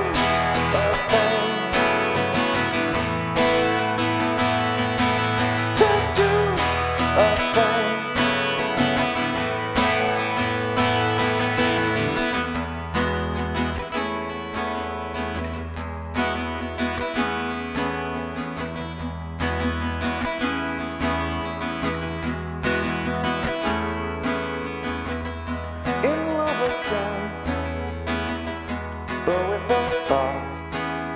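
Acoustic guitar playing an instrumental passage of a song between sung verses, with notes ringing continuously.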